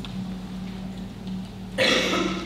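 A man coughs once, loud and sudden, near the end, over a faint steady low hum.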